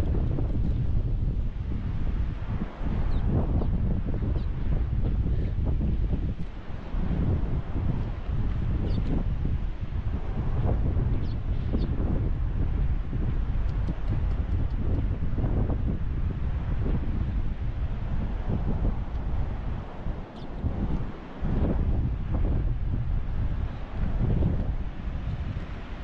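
Wind buffeting the microphone in uneven gusts, a heavy low rumble that swells and eases.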